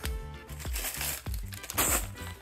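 Background music with a steady beat, and near the end a clear plastic bag of furniture nails crinkling loudly as it is picked up.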